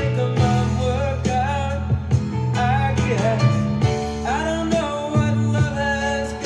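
Soft-rock studio recording playing: a male lead vocal over piano, bass guitar holding sustained low notes, and drums.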